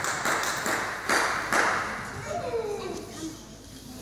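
Spectators clapping and cheering after a point in a table tennis match, the applause fading out after about two seconds, followed by a single voice calling out with a falling pitch.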